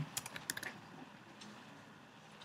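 Typing on a computer keyboard: a quick run of keystrokes in the first second as a short word is typed, then only a few faint clicks.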